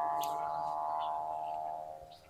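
Hum of a wau bulan kite's hummer bow (pendengung) flying high overhead: a steady droning tone with several overtones that swells a little and fades out near the end.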